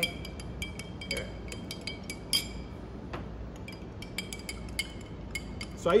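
Metal spoon stirring chocolate syrup into milk in a drinking glass, clinking irregularly against the glass, each clink ringing briefly.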